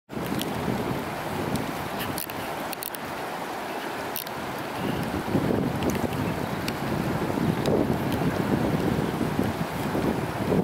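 Wind buffeting the microphone over shallow river water running among rocks; the gusty rumble grows stronger about halfway through.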